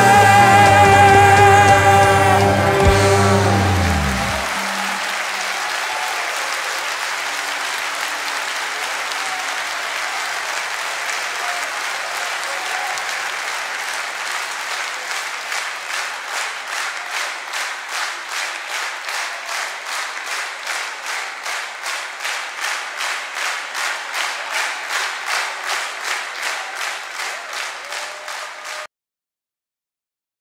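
A singer's last held note, wavering, with the orchestra, ends about three seconds in, and audience applause follows. About halfway through, the applause turns into rhythmic clapping in unison, about two claps a second, until the sound cuts off just before the end.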